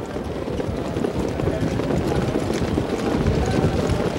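Dense, steady clatter of hoofbeats from a field of Standardbred pacers moving at speed on the racetrack.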